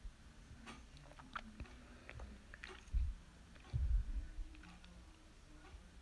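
Faint handling sounds as paper towels are pushed into glass cups: small clicks, taps and rustles, with dull thumps about three and four seconds in.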